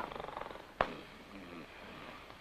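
A man snoring, a rattling, fluttering snore that fades out within about half a second, followed by a single sharp click.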